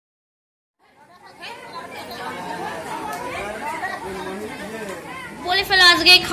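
Chatter of several people talking at once, starting after about a second of silence; a nearer, louder voice comes in near the end.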